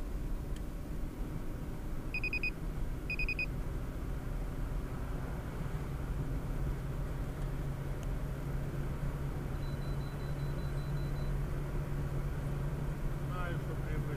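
Car driving at highway speed, heard from inside the cabin: a steady low engine and road hum that grows stronger as the car speeds up. Two short high electronic beeps about two and three seconds in.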